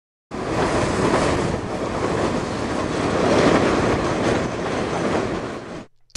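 Train running: a steady rush of rail noise that starts just after the opening and fades out shortly before six seconds.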